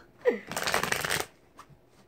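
A deck of cards being shuffled by hand: a dense, rapid fluttering rustle lasting under a second, just after the short falling tail of a woman's laugh.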